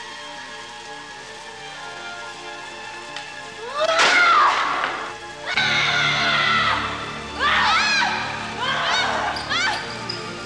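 Dramatic film score with held tones. From about four seconds in, a woman screams and yells several times over the music, each cry rising and falling in pitch.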